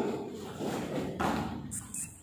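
Thuds and cloth rustling from a martial artist performing a kick on a foam mat. A loud sound fades away at the start, then two softer thumps follow about half a second apart.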